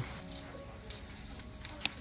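Quiet handling of a folded paper fortune slip: faint paper rustling with a few small ticks, and one sharper click near the end.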